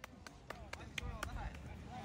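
Faint, distant shouts of soccer players calling to each other across a grass field, several short calls, over a low rumble with a few light clicks.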